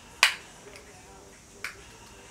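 Two sharp plastic clicks from makeup being handled, a loud one just after the start and a softer one about a second and a half later, typical of a blush compact and brush being worked.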